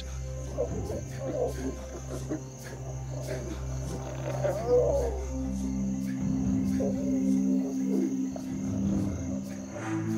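Lioness growling in uneven bouts, an aggressive threat display toward an approaching male lion. Under it is a steady low music drone that shifts pitch about halfway through, with a constant high hiss of crickets.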